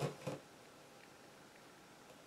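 A spoken word right at the start, then a faint steady hiss with nothing else in it.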